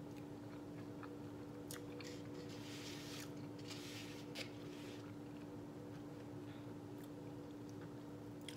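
A person chewing a mouthful of black bean and potato taco, with short wet clicks and a few brief crunchy bursts. A steady low hum runs underneath.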